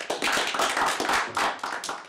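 Audience applauding, many hands clapping quickly and unevenly.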